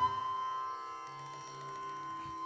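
Carnatic classical music: one melodic line holds a single long, steady note, slid up into just as it begins, over a quiet sustained drone, with no percussion.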